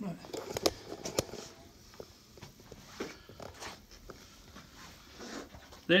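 A few light clicks and knocks and soft handling rustle as people move around the splinted leg, under faint speech.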